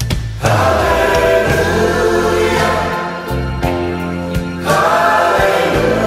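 Background music: a choral song with massed voices on long held notes, starting about half a second in after a short break.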